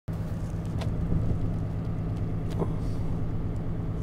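Steady engine and road drone inside a moving pickup truck's cab, with a couple of faint clicks.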